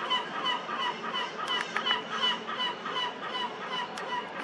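A bird calling in a steady run of short pitched notes, about four a second.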